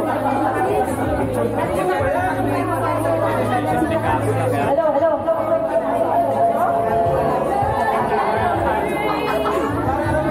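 Many people talking at once in a large room: a steady babble of overlapping conversations, with no single voice standing out.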